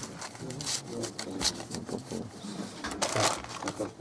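Bundles of paper banknotes rustling and crackling in the hands as they are held and flipped through, in short bursts, with quiet voices murmuring underneath.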